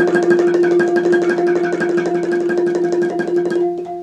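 Ranat ek, a Thai wooden xylophone, struck with padded mallets in a fast, even roll of strokes that holds on one pitch. It is a speed drill, played as fast as possible. The roll stops shortly before the end.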